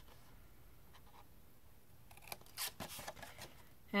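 Small pointed craft scissors (paper snips) cutting cardstock: a few quick, faint snips about two seconds in, after a quiet start, as wedge-shaped notches are cut out along the score lines.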